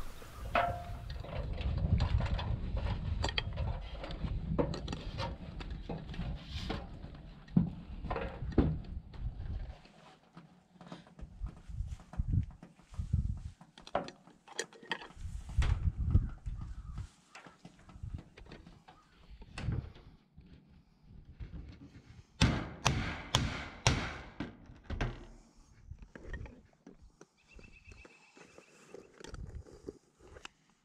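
Scattered knocks, clunks and clicks from sheet-metal ridge cap and roofing being handled and fitted, with a quick cluster of sharp knocks about two-thirds of the way through. A low rumble fills the first third.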